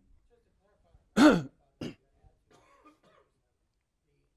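A man coughing to clear his throat close to a clip-on microphone: one loud cough about a second in, then a shorter, quieter one.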